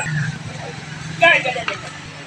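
A man's voice making short vocal sounds at the start and again just past halfway, with a click near the end, over a steady low hum.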